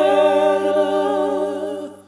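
A tenor holds a long sung note with vibrato over a sustained accordion chord, and both fade out near the end.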